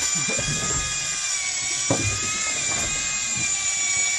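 Miya Command X4 electric fishing reel winding in line with a steady high-pitched motor whine, its pitch wavering slightly as it works against the weight of a big fish on a deep drop.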